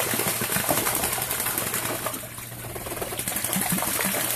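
Ducks bathing in a pond, beating their wings and dipping so the water splashes in a quick, continuous patter, easing off briefly in the middle and picking up again toward the end.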